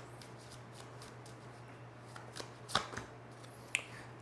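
A deck of tarot cards being shuffled by hand: a quick run of soft card flicks, with a couple of sharper snaps in the second half.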